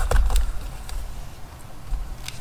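Hands untying and pulling loose a fabric ribbon tied around a handmade journal, with rustling and dull handling bumps, loudest in the first half second.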